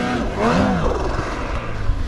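Polaris 850 two-stroke snowmobile engine revving in deep powder, its pitch rising and falling once around the middle as the sled carves.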